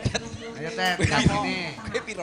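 Voices over a stage sound system, broken by a few dull, low thumps: one at the start, one in the middle and one near the end.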